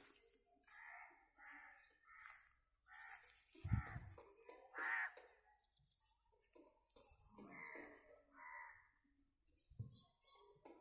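Birds calling in the background, a string of short separate calls, faint. A low thump a little under four seconds in.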